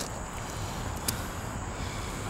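Steady low outdoor rumble with a faint, steady high-pitched tone over it, and a single light click about a second in.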